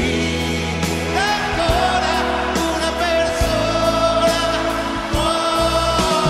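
Italian pop song: a singer holds long notes over a sustained bass and a steady drum beat.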